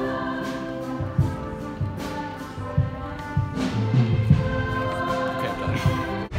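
Music with a choir singing long, held notes, with low thumps underneath.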